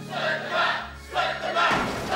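A crowd of young people chanting in unison, a rhythmic shout repeating about twice a second.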